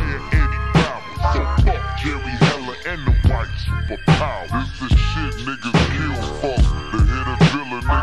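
Slowed-down, chopped-and-screwed hip-hop: a heavy, slow kick-drum beat a little more than once a second over a deep bass line, with slowed, pitched-down rap vocals on top.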